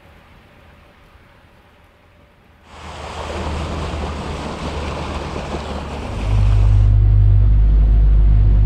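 Faint outdoor quiet for the first few seconds, then an abrupt switch to the loud, even rush of water churned up in a motorboat's wake. About six seconds in, a heavy low rumble from the boat under way takes over and is the loudest sound.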